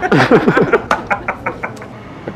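A quick run of about six sharp knocks, about a second in, just after a short burst of laughing with falling pitch.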